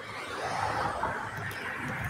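A car passing on the road, its tyre and engine noise swelling over the first half second and then holding steady.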